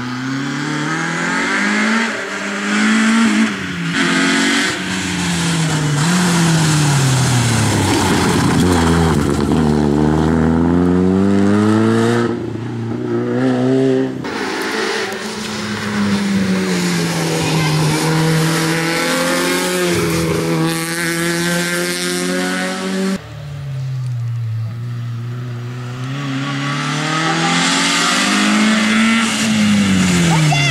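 Citroen Saxo rally car's engine revving hard at full throttle. Its pitch climbs and drops again and again with gear changes and lifts for corners as it passes. The sound breaks off abruptly twice, about 12 and 23 seconds in.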